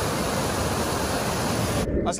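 Steady rush of water pouring over a small rocky waterfall, cut off abruptly just before the end.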